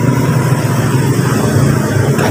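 Steady low rumble of motor vehicle traffic running without a break.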